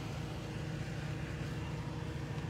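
A steady low mechanical hum, even and unchanging, with no other events.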